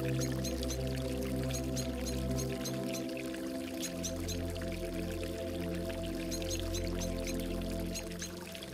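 Slow, calm ambient music of long held chords, the low note shifting about three to four seconds in, layered over a pouring, gurgling water sound with short high chirps and ticks scattered through it.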